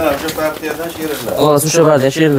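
Edilbay sheep bleating: a few drawn-out, wavering calls, a louder one rising about two-thirds of the way through.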